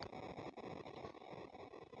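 Faint steady background noise with no distinct sounds, the hiss of open-air ambience.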